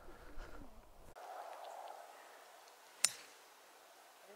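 A golf club striking a ball off the tee: one sharp click about three seconds in, with a brief ring after it.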